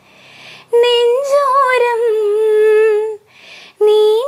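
A woman singing unaccompanied: a long held phrase with a slight wobble in pitch, a breath, then the next phrase beginning near the end.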